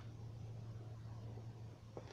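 Quiet room tone with a steady low hum and no speech.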